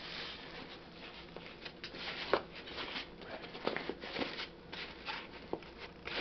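Quiet rustling and light clicks of a small fabric gear bag and plastic packaging being handled on cardboard.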